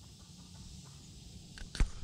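Faint outdoor background, then a short knock and a low thump near the end.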